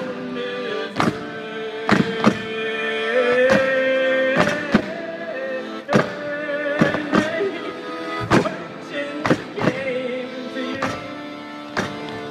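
Instrumental passage from a live folk band: an accordion holds sustained chords while a handheld frame drum gives sharp strikes about once a second, with banjo and brass in the mix.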